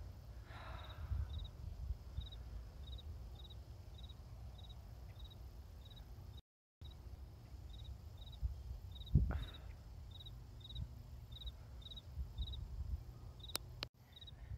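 Outdoor ambience with a low wind rumble on the microphone and a faint, high insect chirp repeating about twice a second throughout. The sound cuts out completely for a moment about six seconds in, and a short louder sound comes about nine seconds in.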